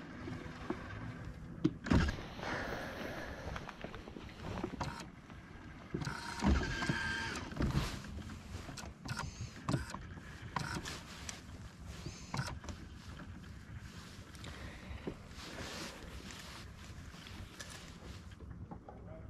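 Handling noise from fishing on a boat deck: scattered knocks and clicks of the rod and gear, with a louder thump about two seconds in and another about six and a half seconds in, over a low steady haze.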